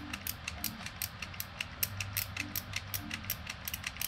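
Ratchet in the back of a Kenner Six Million Dollar Man action figure clicking as its bionic arm is worked up, a rapid string of small plastic clicks.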